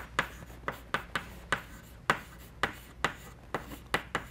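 Chalk writing on a blackboard: a quick, irregular run of sharp taps and short strokes as the letters go down, about a dozen in four seconds.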